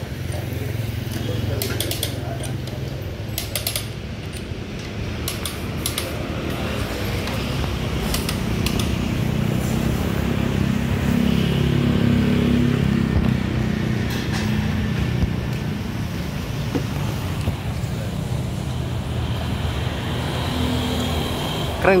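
Sharp metal clicks of hand tools working on the wheel nuts, coming now and then through the first several seconds, over a steady low rumble of a vehicle engine running close by that swells around the middle.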